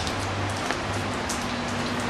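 Steady background hiss with faint scattered ticks, over a low hum that fades out about halfway through.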